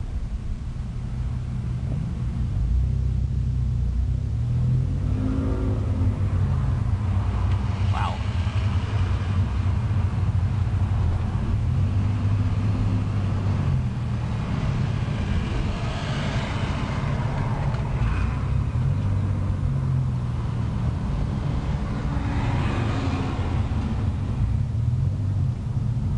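Toyota 4Runner's exhaust through a newly fitted MagnaFlow aftermarket muffler, a low, throaty rumble heard from inside the cabin with the windows down while the truck drives at low revs, swelling and easing as the throttle changes.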